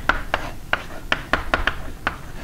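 Chalk writing on a blackboard: about a dozen sharp, irregular taps and short scratches as a word is written.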